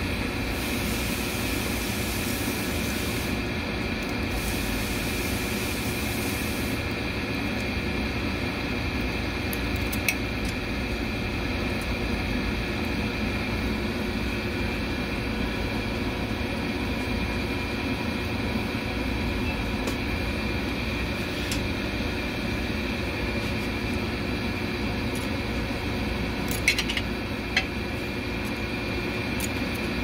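A steady mechanical hum with a high hiss over the first few seconds. A few light metal clicks come through it, a small cluster of them near the end, as the rollers and springs of a Dodge 727 three-speed transmission's reverse sprag are worked into place by hand and with a pick.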